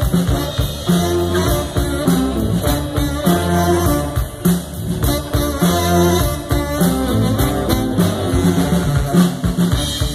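Live band playing amplified through a PA: saxophone lead over electric bass and a drum kit with a steady beat.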